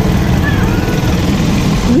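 Steady low engine rumble from a group of small motorized karts riding along the street.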